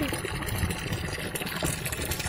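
Tap water pouring in a steady stream into a water-filled tub, splashing and churning the surface as the tub is refilled with fresh water.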